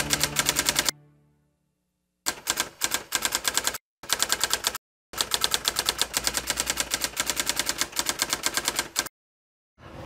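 Typewriter sound effect: rapid keystroke clacking at about ten keys a second, in several runs broken by short silent pauses, timed to on-screen text being typed out.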